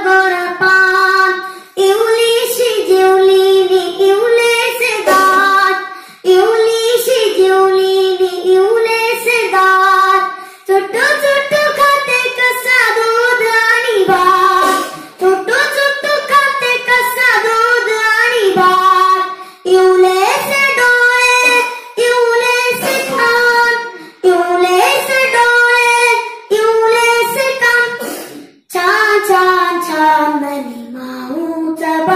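A boy singing a Marathi song solo into a microphone, with no accompaniment, in sung phrases of a few seconds with short breaks between them.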